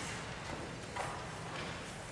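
Footsteps and chair knocks on a wooden stage as string players and a pianist take their seats, a few scattered knocks about half a second to a second apart.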